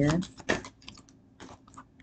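A tarot deck being shuffled in the hands: a scattering of light, irregular clicks and snaps of cards against each other.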